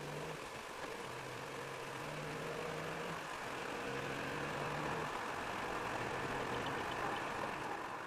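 Car engine and road noise heard inside the cabin, growing slowly louder as the car accelerates hard onto an expressway. The engine note breaks off twice, as at gear changes.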